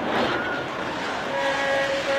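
Steady rushing noise. About two-thirds of the way in, a horn joins it, sounding a held chord of several steady notes.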